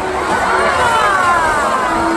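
Pool water from killer whales' tail splashes crashing over the glass wall onto the spectators, with the crowd cheering and screaming.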